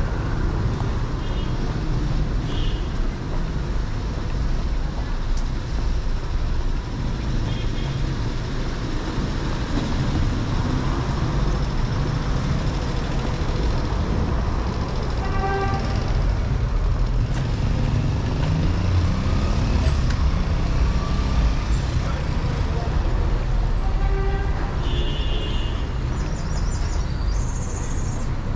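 City street traffic: cars passing in a steady low rumble, with two brief pitched tones, one about halfway through and one near the end.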